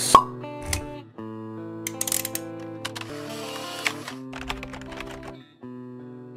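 Intro jingle of held, sustained chords, with a sharp pop right at the start (the loudest sound) and a few short clicks scattered through it as sound effects.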